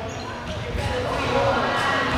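A basketball dribbled on a hardwood gym floor, with a few bounces about a second in, under the voices of spectators echoing in the gym.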